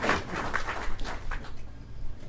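Audience laughter and applause dying away about a second and a half in, followed by quieter room noise with a few low bumps.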